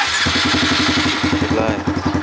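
Honda MSX125's single-cylinder four-stroke engine starting by remote from its anti-theft alarm: it catches at once after a brief starter burst and settles into a fast, even idle.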